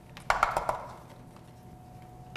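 A short cluster of clicks and knocks, about half a second long, from metal utensils clinking and scraping against a stainless steel fondue pot.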